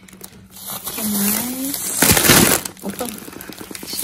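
Plastic grocery packaging rustling and crinkling as the items in the basket are handled, loudest in one burst about two seconds in. A short voice sound comes about a second in.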